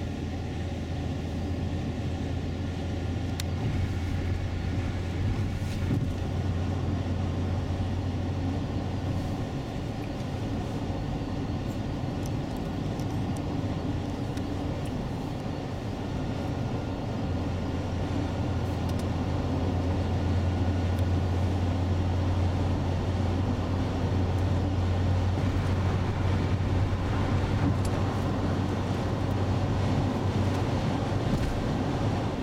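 Steady low drone of road and engine noise inside a 2003 Acura MDX's cabin at highway speed, growing a little louder in the second half.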